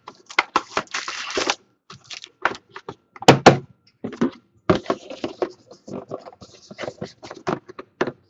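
Cardboard boxes and foil-wrapped card packs being handled: a run of taps, clicks and knocks, a rustling scrape about a second in, and one loud thunk a little past three seconds, as a box or its lid is set down.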